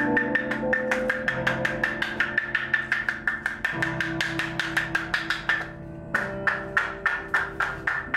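Live instrumental music: a fast, even percussion tick, about six strokes a second, over sustained chords. Both break off for a moment about six seconds in, then resume.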